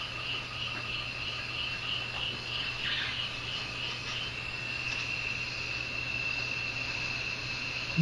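Insects chirping in a documentary's natural ambience: a high, rapidly pulsing chirp that smooths into a continuous trill about halfway through, over a faint steady low hum.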